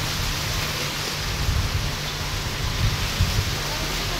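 Wind buffeting an outdoor microphone: a steady rushing noise with irregular low rumbles.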